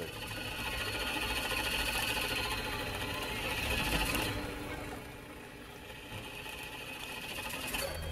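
A small magnetic ball whirring rapidly around on an electromagnetically driven surface, a fast, continuous mechanical buzz. It grows louder toward the middle, then its higher rasp cuts out just after the midpoint and a quieter buzz carries on.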